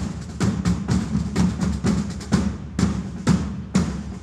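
Marching drums of a Renaissance-costume parade corps, beating a fast, dense cadence with several strong strokes a second and quicker strokes between them.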